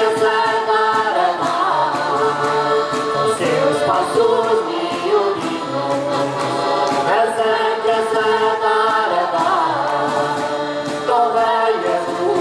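Mixed group of men and women singing a Portuguese vareiro folk song in chorus over a steady beat.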